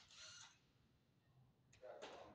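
Near silence, broken by two brief faint noises: one at the start and one near the end.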